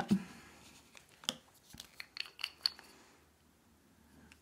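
Faint handling noises from nail-stamping tools, a stamping plate and stamper: a scatter of small clicks and taps, a few with a brief high squeak, from about one to three seconds in.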